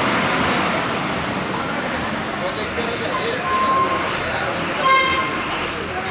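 City buses running in a depot yard, with two short horn toots about three and five seconds in, the second the louder, over background voices.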